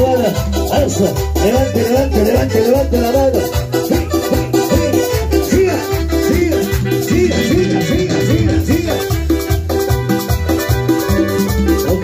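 Live chichera dance music: an electronic keyboard playing a wavering melody over a steady bass-and-drum beat, with shaker-like percussion.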